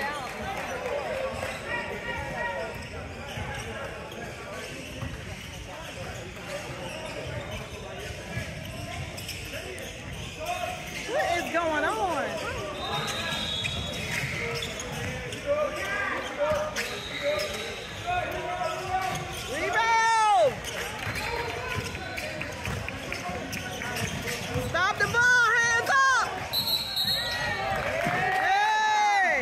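Basketball game on a hardwood gym floor: the ball bouncing while sneakers squeak in several short rising-and-falling chirps, the loudest about two-thirds of the way through and near the end, over players' voices echoing in the hall.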